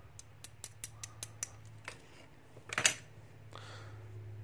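Small metal lock parts being handled in the fingers: light irregular clicks and ticks from a pinned lock plug and its key during the first two seconds, then one louder, brief scrape a little before three seconds.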